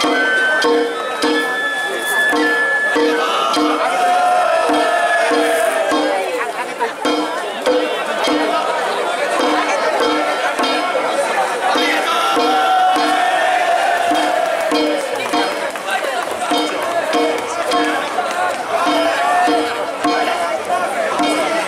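Danjiri festival music (narimono) played on the float, drums and gongs keeping a steady beat of about two strokes a second. Crowd voices and shouts sound over it.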